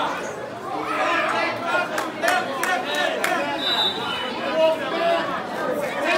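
Indistinct chatter of many spectators in a large hall, with a few sharp clicks about two to three seconds in and a brief high tone just after the middle.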